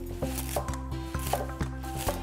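Chef's knife slicing leaf mustard stalks on a wooden cutting board: a steady run of knife strokes, about three a second, over background music.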